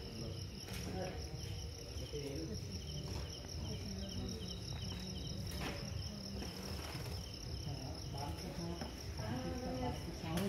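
Crickets chirring in a continuous, steady high-pitched trill over a low background rumble.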